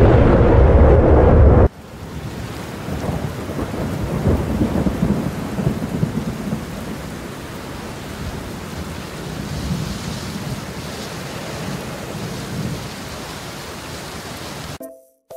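Thunderstorm sound effect: a loud crack of thunder that cuts off abruptly about two seconds in. It is followed by steady rain with a low rumble, which swells for a few seconds and then eases.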